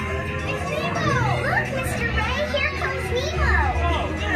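Overlapping high children's voices calling and squealing in quick rising and falling glides, over a steady low hum.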